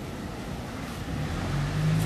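A low, steady engine-like hum comes in about a second in and grows louder, over faint background noise.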